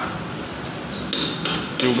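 A few sharp metallic taps and clinks in the second half: metal tools striking the steel steering stem of a Vespa S during a steering head bearing replacement.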